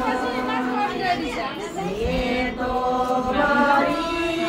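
A group of women singing together in unison, holding long notes of a melody, with chatter mixed in over the singing.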